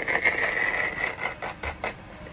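A man's silent, wheezing laughter: a thin high squeal for about a second, over quick irregular clicking breaths.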